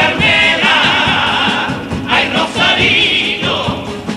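Male chorus of a Cádiz carnival comparsa singing in harmony, with long held notes that waver in pitch, a short break about halfway through, over a rhythmic accompaniment.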